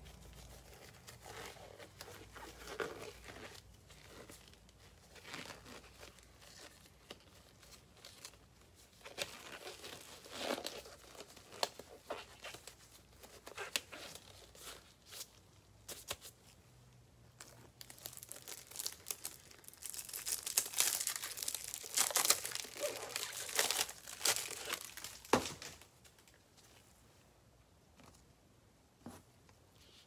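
Plastic wrapping crinkling and rustling as it is handled, in irregular fits and starts, busiest about twenty seconds in and dying down near the end.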